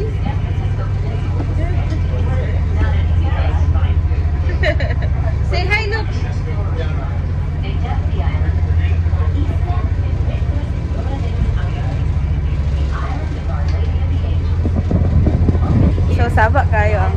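A tour boat's engine running with a steady low hum, heard from inside the passenger cabin.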